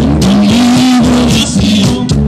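Live norteño band playing accordion, electric bass, drums and guitar. A long held note rises slightly just after the start, over a steady beat.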